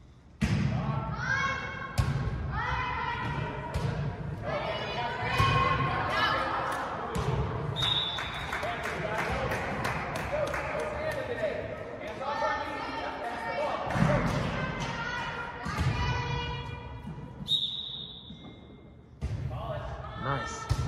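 Volleyball rally in an echoing gym: the ball is struck and thuds repeatedly while girls' voices shout and cheer. A short referee's whistle blast comes about eight seconds in and a longer one near the end.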